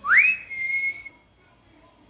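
A person whistling once to get a dog's attention: a quick upward swoop that settles into a held high note, lasting about a second.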